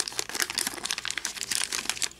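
Paper wrapper of a Bowman baseball card wax pack crinkling as hands peel it open, a dense run of crackles.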